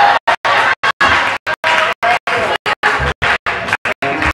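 Voices and music in a church hall, organ among them, cut by complete dropouts to silence about three times a second, the sign of a damaged or glitching recording.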